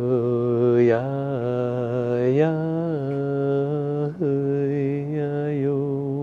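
A man chanting wordless vocables in long, held notes on a low, steady pitch, stepping up slightly about two and a half seconds in, with a quick breath about four seconds in.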